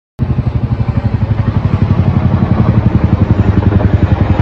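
Boeing CH-47 Chinook tandem-rotor helicopter flying overhead, its rotor blades making a loud, fast, even beat.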